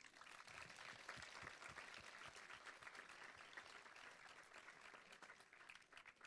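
Audience applause, faint and distant, a dense patter of many hands clapping that thins out toward the end.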